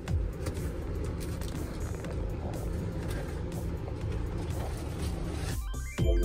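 Steady engine and road noise from inside a moving vehicle, a low even rumble. Background music comes back in right at the end.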